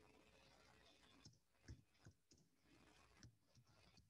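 Faint, scattered clicks of keys being typed on a computer keyboard, a handful of separate keystrokes over a near-silent background.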